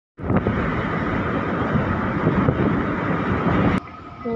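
Steady wind and road noise from a moving vehicle, heavy in the low end, with no voice. It cuts off abruptly just before the end.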